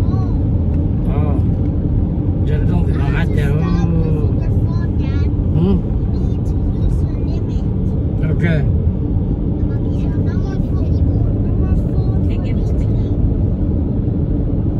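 Steady low road and engine rumble inside a moving car's cabin, with quiet voices talking now and then.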